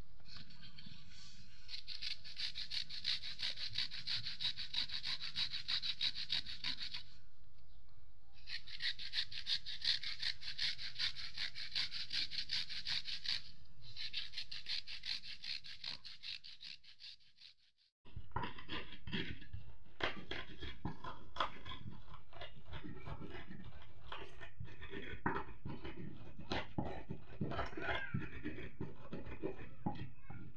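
Young cassava rasped on a flat metal hand grater in quick, steady strokes, in three runs, fading out a little after halfway. Then a pestle pounds and grinds shallots, garlic and chillies in a wooden mortar in a run of quick knocks.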